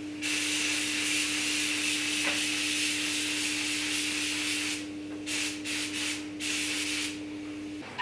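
Compressed-air spray gun spraying black epoxy primer. It gives a long hiss of about four and a half seconds, then three shorter bursts as the trigger is pulled and released. A steady hum runs underneath.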